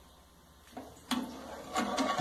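Low room noise, then about a second in a knock and scraping from a metal spoon in an aluminium pot, as sugar is stirred into the liquid.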